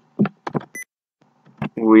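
Computer keyboard keys being typed, a few separate taps in the first half second, then a short high electronic beep. A man's voice starts near the end.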